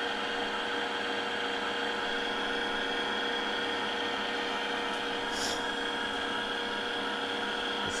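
Weston Deluxe electric tomato strainer's motor running with a steady hum of several tones while it presses tomatoes through its fine screen.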